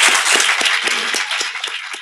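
An audience applauding, the clapping thinning out toward the end until single claps stand out.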